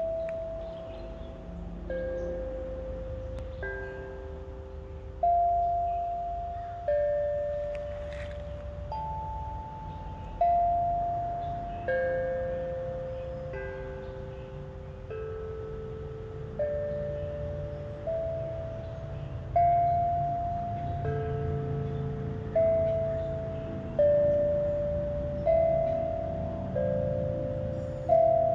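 Steel tongue drum played as a slow melody: single notes struck about every one and a half seconds, each ringing on and fading away. Under it runs the low, steady rush of a flowing creek.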